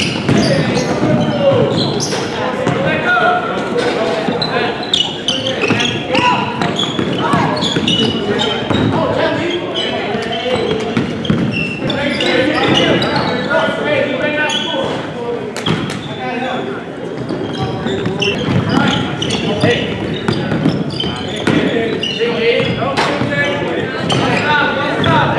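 Basketballs bouncing on a hardwood gym floor during play, among echoing voices of players and people courtside, with one sharp knock about two thirds of the way through.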